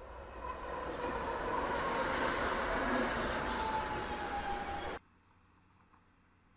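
Diesel freight locomotive approaching on a curve, the train noise building to a peak about halfway through, with a thin high squeal from the wheels on the curve that dips slightly in pitch. It cuts off suddenly about five seconds in.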